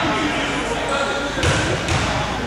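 A basketball bouncing a few times on an indoor court floor, with people's voices chattering throughout.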